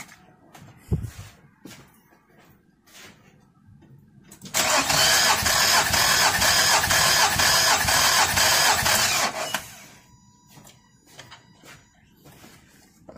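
Starter cranking a 2006 Nissan Altima's four-cylinder engine for about five seconds, starting about four and a half seconds in, with even pulses about three a second, for a compression test on cylinder two. A few small clicks and a knock come before it.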